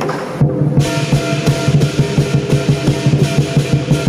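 Southern lion dance percussion: rapid, steady beats of the large lion drum with clashing cymbals and a ringing gong. The cymbals drop out for a moment about half a second in, then come back in.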